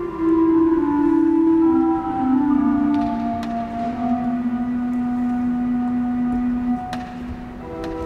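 Organ playing a slow, quiet passage of held chords, with a lower voice stepping slowly downward beneath sustained upper notes. A few faint clicks sound over the chords.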